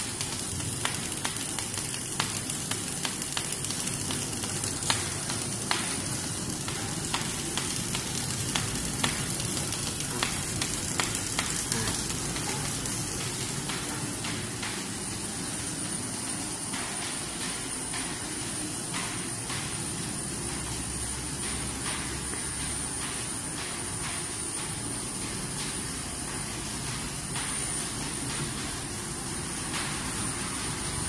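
Steady mechanical running noise from an automatic pallet stretch wrapping machine, with scattered clicks and crackles during the first dozen seconds and a faint high whine.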